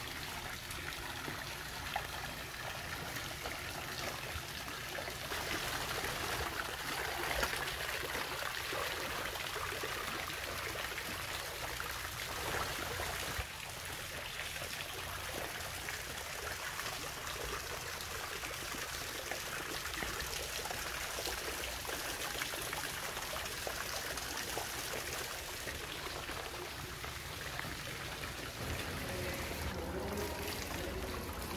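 Garden fountain water splashing and trickling steadily into its stone basin, a little louder for several seconds in the first half.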